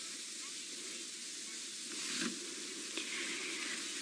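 Faint, steady hiss of outdoor bush ambience with no clear animal call, and a brief soft rustle about two seconds in.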